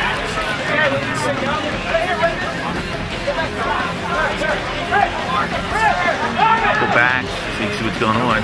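Many voices talking and calling out over one another at once, with no single voice clear: spectator and player chatter along a lacrosse field.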